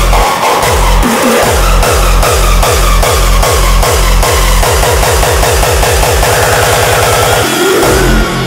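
Hardstyle dance music with a heavy kick drum at about two and a half beats a second. The kick drops out briefly just after the start, then quickens into a fast roll from about five seconds in and cuts off just before the end as a new section begins.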